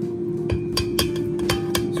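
A silicone spatula scraping and knocking sticky cheese dough off a ceramic plate into a stainless steel bowl, giving a quick run of about six clicks and taps in the second half, over background guitar music.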